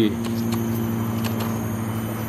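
Steady low hum of a running motor, holding one pitch, with a few faint ticks.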